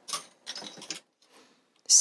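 Plastic knitting-machine weight hangers being hooked onto the knitting under the LK150's needle bed. A sharp click comes first, then a short rattling scrape about half a second in, and a faint tap later.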